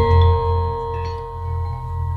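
Javanese gamelan ringing out after its last stroke: a large bronze gong's low hum and the held tones of the bronze metallophones fade slowly, with no new notes struck.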